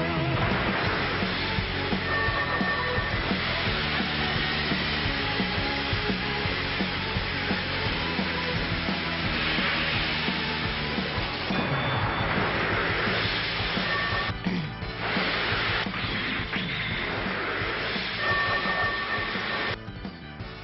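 Action sound effects of toy battle cars fighting in a ring: a steady hissing, rushing whoosh with motor whine, laid over background music, dipping briefly about two-thirds of the way through.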